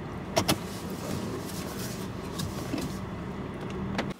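Inside a car cabin: a steady hum of the car's running engine, with two sharp clicks close together about half a second in.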